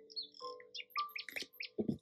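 Faint high bird-like chirps over a few held low tones, with several soft clicks and knocks in the second half.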